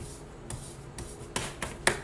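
Board eraser scrubbed over a wet chalkboard in short rubbing strokes, with a handful of sharp scuffs that come closer together toward the end, the loudest just before it ends.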